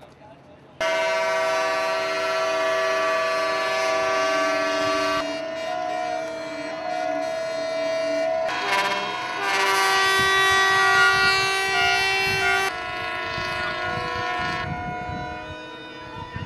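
Several ships' horns sounding together in a long, loud chord that starts suddenly about a second in, with horns dropping out and others joining at several points. It is a harbour salute from the surrounding boats as the statue of the Virgin is taken aboard for the sea procession.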